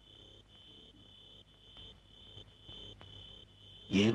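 Crickets chirping: a faint, high, continuous trill with brief breaks every half second or so, the night-time ambience of the scene.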